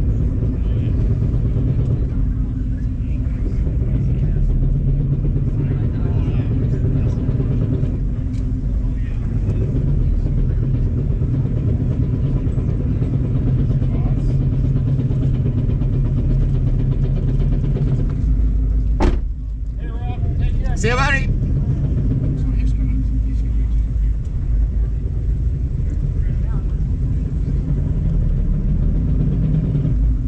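A car's engine running steadily at a crawl, heard from inside the cabin as a low drone. About 19 seconds in there is a sharp click, then a short wavering tone that rises and falls for about a second and a half.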